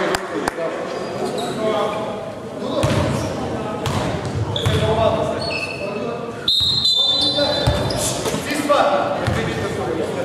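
Basketball dribbling on a hardwood gym floor, echoing in a large hall, with a referee's whistle blown once, a short high blast about six and a half seconds in.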